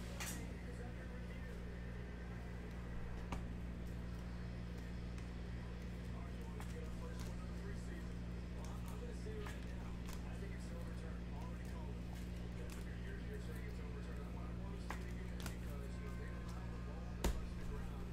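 Trading cards and plastic card holders being shuffled and set down on a table: light clicks and rustles over a steady low hum, with one sharp tap near the end.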